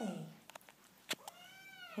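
Mother cat squawking: one long meow trailing off at the start, two brief sharp clicks in the middle, then another long call that rises and falls near the end.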